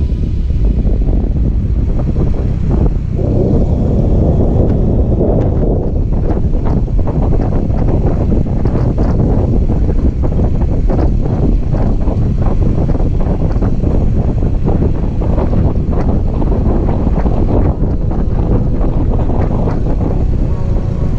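Wind buffeting the microphone of a camera on a moving motorcycle: a loud, steady rumbling noise, heaviest in the low end.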